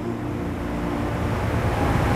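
Steady low background rumble and hiss, with a faint low hum.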